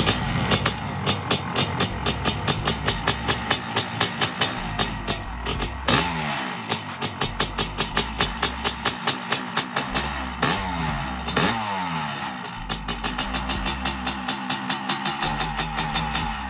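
A 1994 Honda CR500 single-cylinder two-stroke engine running and being revved, its pitch rising and falling about six seconds in and again around eleven seconds, with background music underneath.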